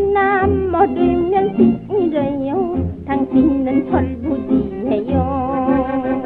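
Early Korean popular song from a 1930s 78 rpm shellac record: a woman's high voice sings with wide vibrato over a small band keeping a steady beat. The sound is thin and narrow, with no high treble, as in an early recording.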